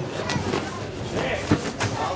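Voices calling out in a large hall, broken by several sharp knocks or thuds, the loudest about a second and a half in.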